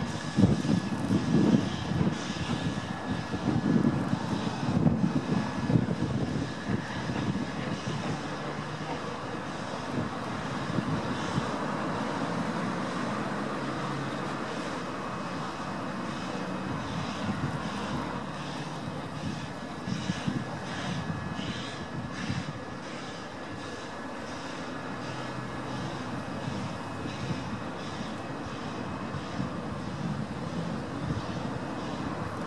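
Steam locomotive pulling away with its train, the exhaust chuffing loudest in the first few seconds and then settling into a steadier, fainter rumble as it draws off into the distance.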